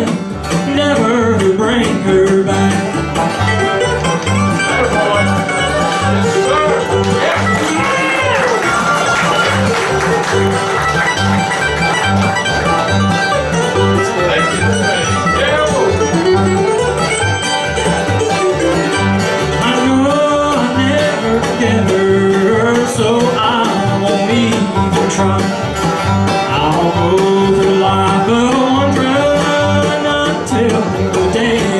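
Bluegrass string band of mandolin, acoustic guitar, banjo and upright bass playing an instrumental break, with no singing, over a steady bass beat.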